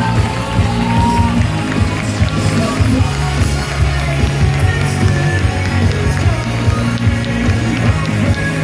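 Live pop-rock band playing loudly, with steady heavy bass and sustained chords.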